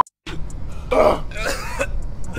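A man coughing twice in quick succession, about a second in, his throat burning from the super-hot pepper chip he has just swallowed.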